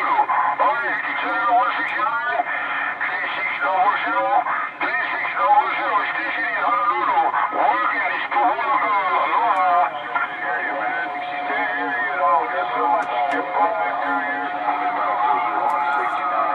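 Single-sideband voice traffic from an HR2510 ten-meter radio tuned to 27.385 MHz (CB channel 38): distant stations talking over the speaker, the words not clear enough to follow. A steady whistle joins in about two-thirds of the way through.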